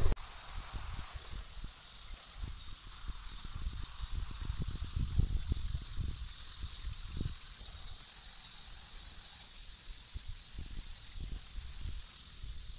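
Outdoor ambience on an open slope: low, irregular rumbling of wind on the microphone, strongest in the middle, over a steady high-pitched hiss.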